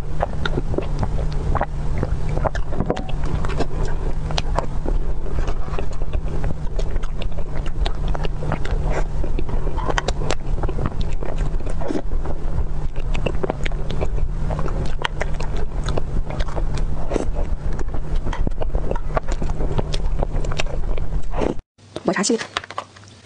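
Close-miked eating sounds: many sharp wet mouth clicks and smacks while a person eats a soft chocolate cream dessert by the spoonful. Under them runs a steady low rumble, and everything cuts off abruptly just before the end.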